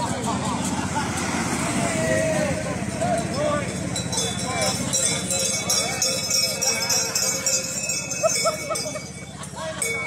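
A group of people talking together in the street, with a car driving slowly past at the start. Through the middle there is a rapid, irregular clattering of clicks over the voices.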